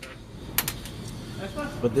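A few light clicks, a little over half a second in, from a rotary engine's rotor and its loose seals being handled and turned over.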